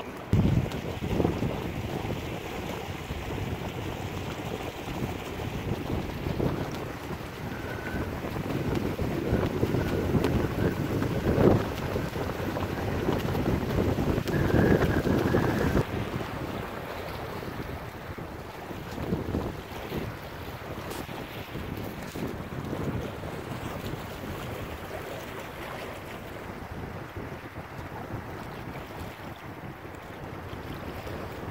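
Wind buffeting the microphone aboard a small sailboat under sail, with water washing along the hull. The gusts are strongest around the middle and ease off in the second half.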